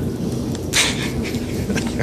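People laughing at a joke, a mostly breathy, unpitched sound with one short louder burst of laughter a little under a second in.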